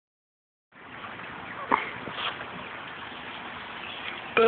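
A steady hiss of outdoor background noise that cuts in just under a second in, with one brief sharp sound near the middle.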